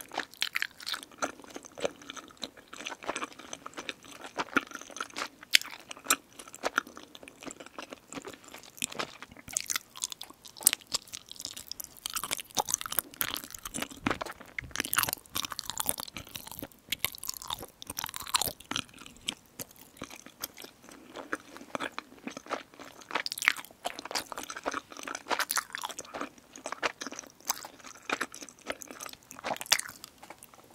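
Close-miked chewing of sticky, chewy rice cakes (tteokbokki) in black bean sauce, heard as a dense, uneven run of small mouth clicks and bites.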